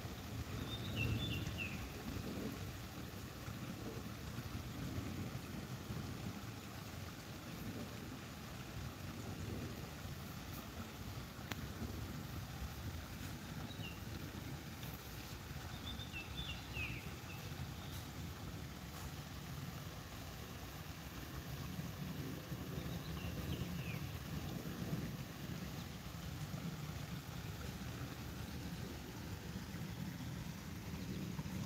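Low, unsteady wind noise on the microphone by a slow creek, with a bird giving short high chirps a few times, about a second in, then around 14, 17 and 23 seconds.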